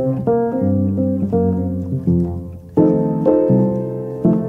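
Piano music: a flowing line of single notes over low sustained bass notes, with a louder, fuller chord struck near three seconds in.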